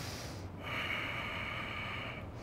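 A person breathing audibly into the microphone: a brief hiss of breath, then one long, steady breath of about a second and a half.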